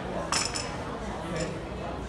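Metal gym equipment clinking: a bright, ringing metallic clink about a third of a second in, and a lighter one about a second later.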